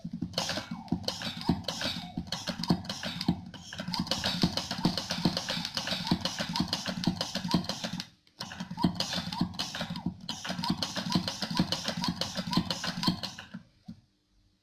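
Hand-operated pressure calibration pump being worked in quick, continuous strokes to build pressure on a pressure transmitter toward its 75% test point, with a short pause about eight seconds in.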